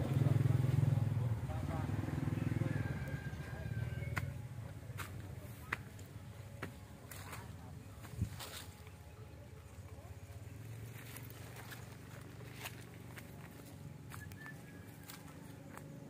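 Faint outdoor background: a low hum that fades out over the first few seconds, then quiet with scattered light clicks and taps.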